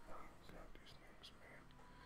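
A faint, indistinct voice, barely above near silence.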